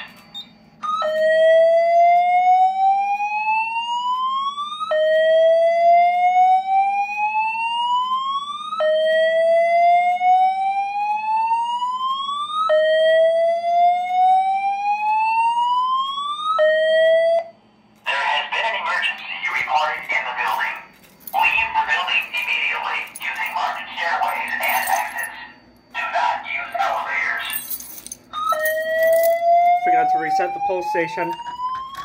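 Fire alarm speaker strobe (System Sensor SpectrAlert Advance) sounding a slow-whoop evacuation tone: four rising sweeps of about four seconds each, the fifth cut short. A recorded voice evacuation message follows with some static in it, and near the end the whoop starts again.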